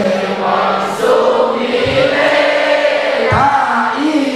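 Many voices singing a sholawat together in unison, with long held notes that glide up and down between phrases.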